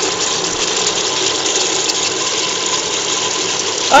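Steady rushing noise of meat broth boiling hard in an open pressure cooker on the stove.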